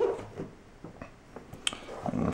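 Light knocks and clicks of a wooden coin display case being handled on a wooden table: a sharper knock at the start, then a few soft scattered ticks.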